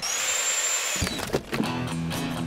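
Logo sound effect: a hissing, drill-like whir for about a second that cuts off, then a sharp hit and guitar music starting.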